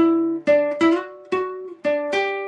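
Nylon-string classical guitar in drop D tuning playing a single-note riff on the D string: about five plucked notes in two seconds, with slides up the fretboard between some of them.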